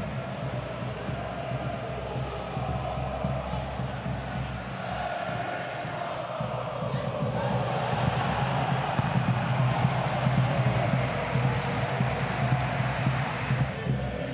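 Football stadium crowd: supporters chanting and singing over a general murmur, growing somewhat louder about halfway through.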